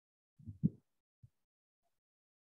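A few soft, low thuds close to the microphone: two close together about half a second in and one more just after a second.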